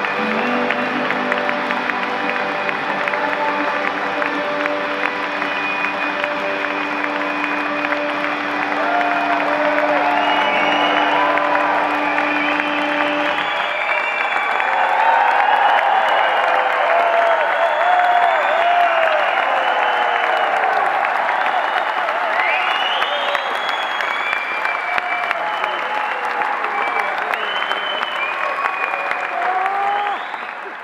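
A live acoustic band (guitar, mandolin and lap steel) holding its final chord over audience applause. The chord stops about halfway through, and the crowd keeps clapping and cheering, with whoops rising above the clapping.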